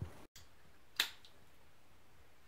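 A drink can's pull tab cracked open: one sharp snap about a second in, with a brief fizz after it.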